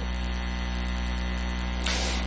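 Steady electrical mains hum: a constant low buzz with a long stack of evenly spaced overtones, unchanging throughout.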